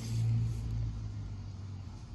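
Low rumble of a motor vehicle engine, loudest at first and then fading away.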